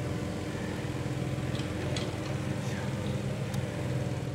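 Mini excavator's diesel engine running steadily with a low, even hum, with a few faint knocks.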